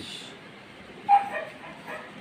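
A dog barks once, briefly, a little over a second in, over a low background.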